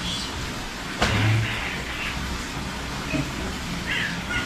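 Bundles of yardlong beans rustling as they are gathered up and lifted from the floor, with one sudden thump about a second in over a steady low hum.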